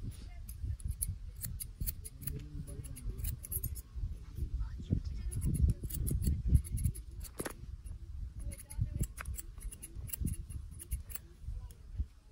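Barber's scissors snipping hair cut over a comb, in quick runs of short crisp snips with brief pauses between, over a low rumble.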